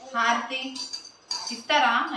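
Metal puja utensils clinking and ringing, with a voice speaking over them near the end.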